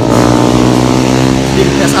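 Motorcycle engine running at a steady, even pitch, loud and close, with a voice starting near the end.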